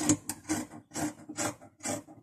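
Scissors cutting through cloth: a run of short snips, about two a second.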